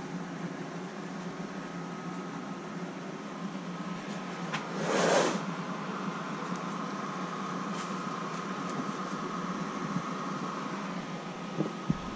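Fleece liners being handled and stuffed into a storage bin, with one short, louder swish about five seconds in, over a steady mechanical hum.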